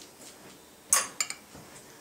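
Metal spoon clinking against a serving bowl while folding stuffing: one sharp clink about a second in, then two quicker, lighter clinks.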